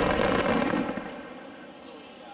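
Aerial fireworks crackling and rumbling from a large chrysanthemum shell's burst, dying away over the first second and a half.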